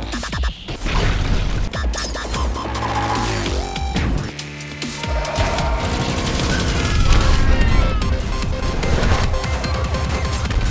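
Film-score music mixed with action sound effects: rapid blaster-like shots, crashes and booms. The effects ease briefly about four seconds in, then the mix builds louder near the end.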